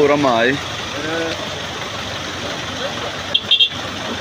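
Engines of a road traffic jam running and idling in floodwater, a steady noise bed under people talking. A quick run of three or four sharp sounds comes about three and a half seconds in.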